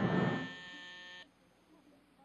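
The end of an electronic organ music cue: a held chord drops in level about half a second in and cuts off abruptly just after a second, leaving near silence.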